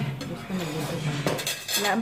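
Metal spoons clinking and scraping against ceramic bowls and plates as soup is served at the table.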